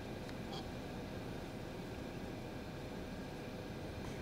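Steady low rumble and faint hiss of background noise inside a car, with a few faint ticks.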